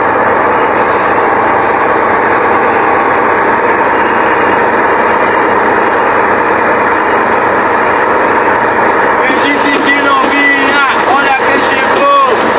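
Loud, steady rush of wind and road noise through the open window of a moving bus. From about nine and a half seconds in, people's voices call out over it.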